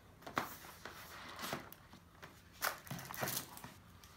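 A wooden chocolate gift box being handled and opened: a few soft wooden knocks and light rustles as the lid is worked loose and lifted off.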